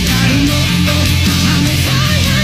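Rock band playing live at a steady high level: distorted electric guitar, bass guitar and drums.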